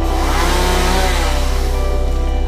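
Background music with a whooshing transition sound effect laid over it; the whoosh swells in the first half-second and fades away by the end.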